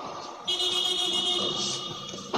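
A steady high-pitched, horn-like tone sounds for about a second and a half, starting about half a second in.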